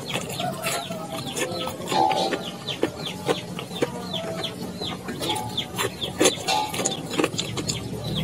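Close-up chewing of a soft fried banana nugget, with many short mouth clicks. Chickens cluck in the background with repeated short calls, some sliding downward.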